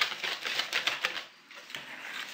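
Wire balloon whisk beating a thick almond cream mixture in a bowl: a fast run of clicking strokes as the wires hit the bowl. The strokes pause briefly just past halfway, then resume more softly.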